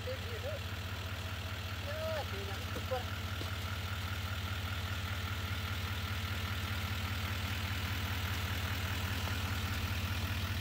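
Chevrolet Silverado pickup's engine idling steadily, getting slightly louder toward the end.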